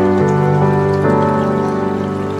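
Slow, calm background music of long held chords that change twice, with faint dripping-water sounds mixed in.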